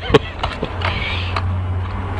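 Sharp plastic clicks and knocks from a caravan's toilet-cassette service hatch and cassette being handled, about five of them, over a steady low rumble.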